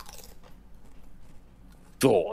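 Faint crunching and chewing of food, a scatter of small crackles and clicks.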